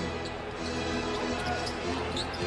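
A basketball dribbled repeatedly on a hardwood court, each bounce a short thud, over steady arena music.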